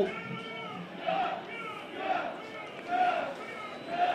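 Distant voices shouting: four short, high-pitched calls about a second apart, quieter than the commentary around them.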